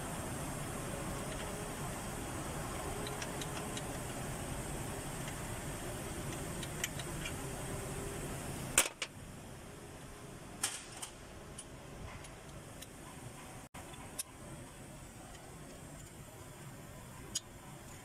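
Steady workshop background noise that stops abruptly about nine seconds in. After it come a few short, sharp metallic clicks and clinks of hand tools against engine parts.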